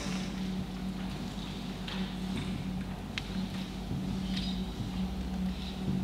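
A marker writing on a whiteboard, heard as a few faint taps and scratches, over a steady low electrical or ventilation hum in the room.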